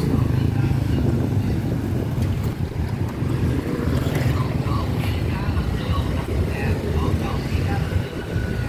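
Small motorbikes and scooters running as they pass on a busy street, a steady low traffic rumble.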